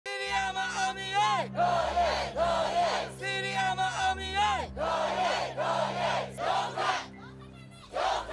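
A protest crowd chanting slogans in unison, in short shouted phrases repeated over and over. The chant drops away about seven seconds in.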